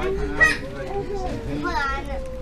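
Children and adults talking and calling out, with a short shout about half a second in and another voice near the end; no stick strike is heard.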